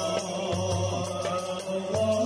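Moroccan Sufi madih chant: several men's voices singing together over hand drums, a frame drum and a small goblet-shaped drum, beating a slow steady pulse of about one stroke every 0.7 seconds.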